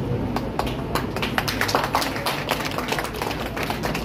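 Audience applauding: a dense run of hand claps that thickens about a second in and thins near the end, over a steady low hum.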